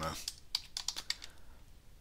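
Typing on a computer keyboard: a quick run of keystrokes in the first second or so, then a few scattered, fainter taps.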